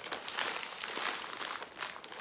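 Wrapping crinkling and rustling in a run of small irregular crackles as the cut halves of panettone and veneziana are handled and moved.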